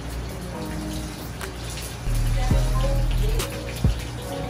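Food sizzling and crackling in hot oil in a skillet, with background music whose low bass grows louder about halfway through.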